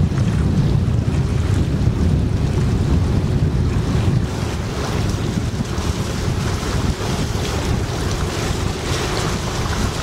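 Wind buffeting the microphone over water washing along the hull of a moving boat, a steady low rumble that eases a little about four seconds in.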